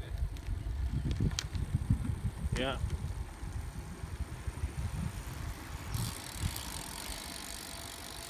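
Wind buffeting the microphone of a camera carried on a moving touring bicycle, an uneven low rumble. A steady higher hiss joins about six seconds in.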